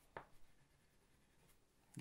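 Near silence with faint rubbing of oil pastels on paper as two drawings are shaded, and one short soft tap near the start.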